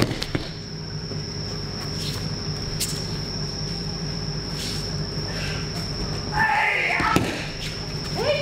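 Aikido throws and breakfalls on tatami: a few soft thuds over a steady hall hum, then a shout about six and a half seconds in and a sharp slap of a body hitting the mat just after.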